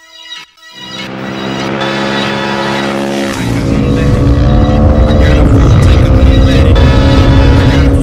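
KTM 450 SMR supermoto's single-cylinder four-stroke engine running hard at high revs, growing louder. About three seconds in its pitch drops, and it reaches its loudest a few seconds later.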